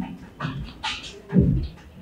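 A whiteboard being wiped with a cloth: about four scrubbing strokes, roughly two a second, each a rub with a dull knock of the board.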